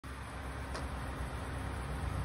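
Steady outdoor background noise: a low rumble under a faint hiss, with one light click just under a second in.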